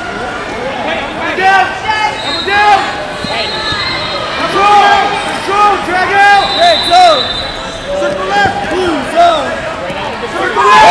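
Coaches and spectators shouting in a large hall, many short rising-and-falling calls overlapping throughout. A thin high steady tone sounds twice under the shouts.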